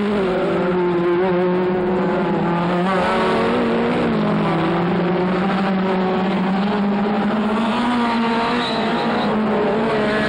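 Several modified touring-car race engines running hard together as a pack of cars takes a bend on an oval track, at high revs with their pitches wavering up and down as they lift off and accelerate.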